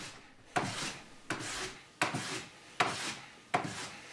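Hand plane taking shavings off a thin wooden board: five quick strokes, about one every three-quarters of a second, each starting sharply and trailing off.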